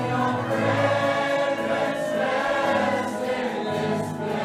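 A choir singing a Christian worship song over sustained instrumental accompaniment.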